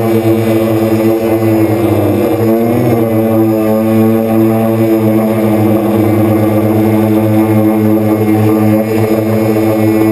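Quadcopter motors and propellers humming steadily at a constant pitch, with a brief wobble in pitch a couple of seconds in.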